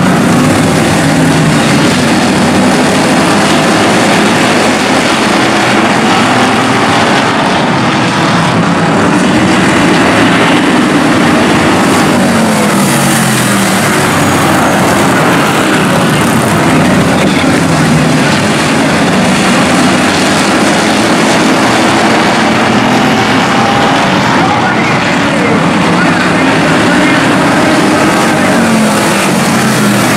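A pack of hobby stock race cars running at racing speed, many engine notes overlapping. The pitch glides up and down as cars pass and lift for the turns, loud and unbroken throughout.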